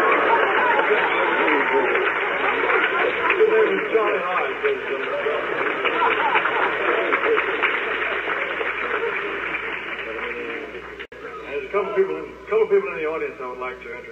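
Concert audience applauding and cheering, a dense crackle of clapping that fades after about ten seconds. A brief dropout comes a little past eleven seconds, then voices.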